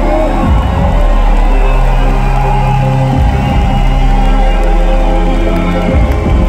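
Loud live instrumental music over an arena PA, with held chords and a steady bass line, and the crowd cheering under it.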